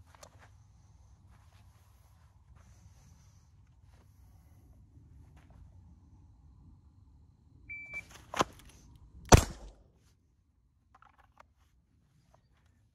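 A shot timer gives one short beep, and just over a second and a half later a single .22 LR shot comes from a Ruger LCR snub-nose revolver, fired after a deep-concealment draw. A sharp click comes between the beep and the shot, over a faint low wind rumble.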